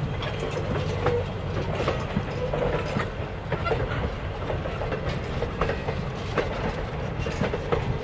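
Passenger coaches rolling past at low speed: a steady rumble of wheels on rail, with irregular clicks as the wheels pass over rail joints.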